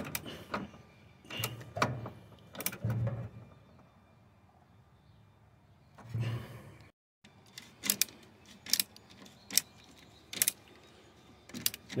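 Scattered metal clinks and light knocks of a socket and extension being handled and set onto the bracket bolts, with a brief total dropout about seven seconds in.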